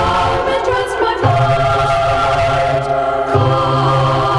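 Choir singing a hymn a cappella, in long held chords that change a little past one second and again past three seconds.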